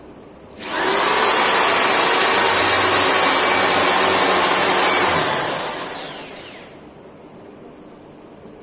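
Electric drill starting about half a second in and running steadily at full speed for about four and a half seconds as it bores a hole in a door frame, then winding down with a falling whine once the trigger is released.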